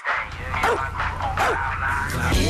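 An English bulldog barking a few short times over background music with a steady low beat.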